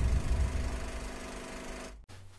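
The tail of a channel intro sound effect: a low mechanical rumble with a steady humming drone, fading away and then cut off suddenly at the end.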